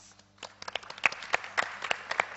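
Audience applause after a talk ends: it starts about half a second in and quickly fills out into many hands clapping.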